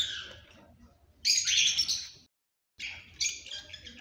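Cockatiels calling: a sharp call at the start, a louder harsh call lasting about a second starting about a second in, then several short chirps near the end.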